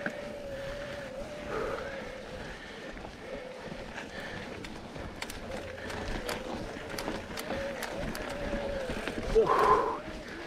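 An electric-assist bike motor whines steadily under load on a dirt-trail climb, its pitch wavering slightly with speed. Tyres crunch and tick over rocks and dirt, and a short louder burst comes near the end.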